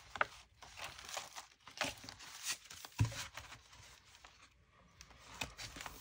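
Sheets of paper rustling and crinkling as pages are handled and shuffled into place, with a single thump about halfway through.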